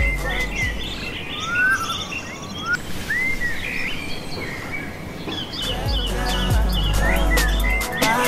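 Birds chirping and calling over a break in an R&B song: the bass and beat drop out for about five seconds, leaving mostly birdsong, then come back near the end.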